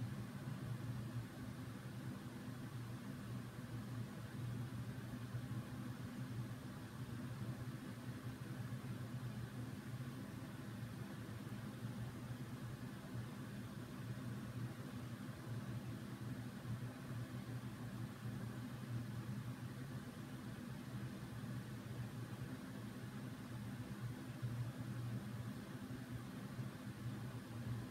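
Steady low hum with a faint even hiss: constant background room noise, with no distinct events.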